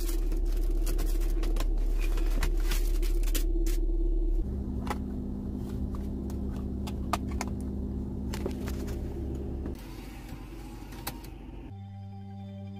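Steady low hum of a car idling, heard inside the cabin, with sharp plastic clicks and rattles of CD jewel cases being handled in the glovebox and a case being opened. The hum changes pitch and gets quieter suddenly twice, about four and ten seconds in.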